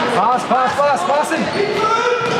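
A quick run of short pitched squeaks from players' shoes on the sports-hall floor during an indoor youth football game, with voices in the hall around them. The hall makes everything echo.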